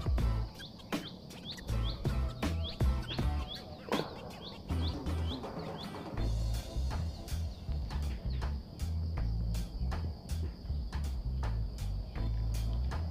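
A small bird chirping over and over, short rising notes about two a second, stopping about six seconds in, over a steady high insect drone. Wind rumbles and buffets the microphone throughout.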